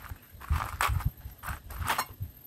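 Small metal and plastic parts clattering in a plastic box as a hand rummages through them: a handful of irregular knocks and rattles.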